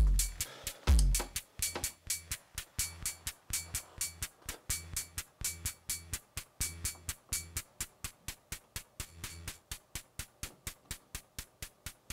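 Modular-synth drum patch playing a fast sixteenth-note hi-hat pattern, about eight crisp ticks a second, triggered through a Doepfer A-162 Dual Trigger Delay. A kick drum is loud on the first couple of beats and then drops well back in the mix as it is turned down.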